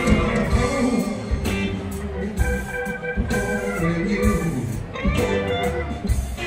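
A live band playing on stage, with sustained organ-like chords over guitar and steady drum hits.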